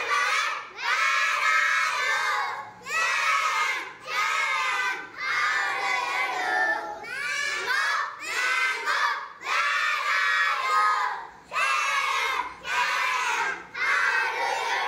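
A group of young children singing a simple song loudly in unison, in short phrases with brief pauses between them.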